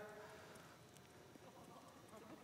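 Near silence: faint room tone, with the tail of a man's voice dying away at the very start.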